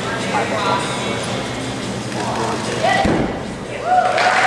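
A single heavy thud about three seconds in, typical of a high bar dismount landing on the mat, over steady crowd voices in a large hall.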